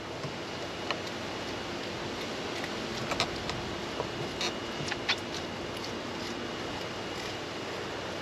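Fillet knife cutting along a wahoo's backbone, giving a few short faint clicks as the blade rides over the vertebrae, over a steady outdoor background hiss.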